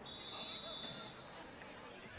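Referee's whistle blown once: a single steady high note lasting about a second, blowing the play dead after a tackle.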